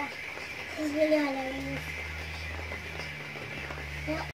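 A person's voice speaks briefly about a second in, then a steady low hum sets in from about halfway and carries on.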